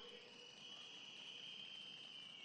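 Near silence, with a faint, steady, high-pitched trill of crickets.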